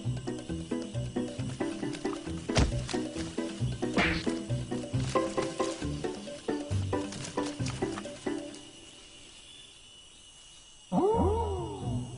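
Background music with a steady rhythmic beat and plucked notes, stopping about eight and a half seconds in. About eleven seconds in comes a loud call from a tiger, about a second long, whose pitch rises and then falls.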